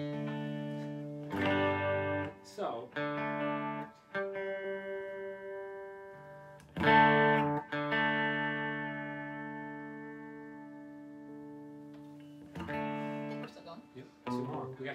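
Electric guitar playing sustained chords. A final loud chord is struck about seven seconds in and rings out, fading slowly, then a softer chord comes near the end.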